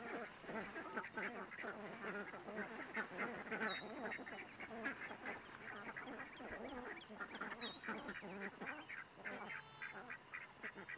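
A flock of ducks quacking continuously, many short calls overlapping one another.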